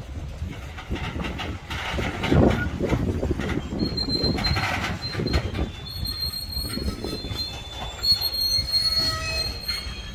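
Loaded freight hopper cars of a Florida East Coast Railway train rolling slowly past with a low rumble and clunks as the train slows to a stop. About four seconds in, a steady high-pitched squeal from the wheels and brakes begins, and more squealing tones join near the end.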